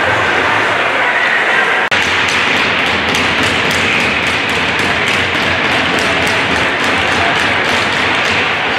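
Rapid, even ticking about four times a second, starting about two seconds in after a brief dropout, over a loud steady background hiss.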